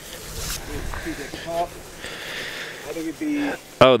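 Quiet background talk from people a little way off, over faint outdoor room noise, with a man's voice starting close by at the very end.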